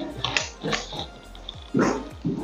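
Background music, broken by a few short, loud bursts, the loudest near the end.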